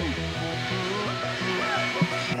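Background music with a plucked string melody; a low beat underneath drops out about half a second in.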